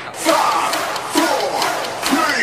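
Several voices shouting together at once, like a small crowd yelling.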